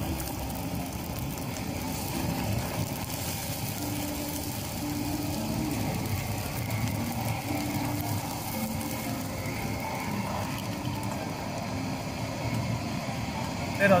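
Minced garlic sizzling in hot oil in a small wok on a portable gas stove: a steady frying hiss.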